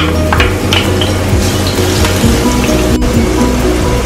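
Crushed garlic sizzling in hot oil in a stainless steel pot as it is stirred with a wooden spoon, under background music.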